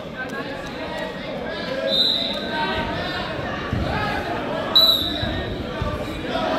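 Referee's whistle, two short blasts about three seconds apart, the second louder, over voices echoing in a gym.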